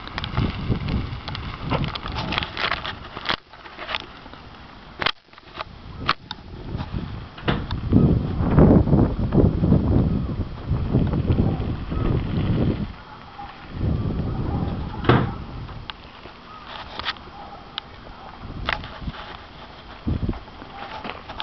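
Wind rumbling on the microphone in uneven gusts, with a few sharp clicks.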